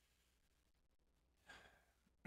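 Near silence, with a faint breath drawn in about one and a half seconds in, just before speech resumes.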